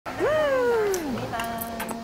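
A woman's long, delighted squealing exclamation, "hieeeek", which jumps up in pitch and then slides slowly down over about a second, followed by a short steady held tone.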